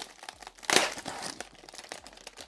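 Plastic wrapper of an Oreo cookie package crinkling as it is pulled open by hand, with a louder rip a little under a second in.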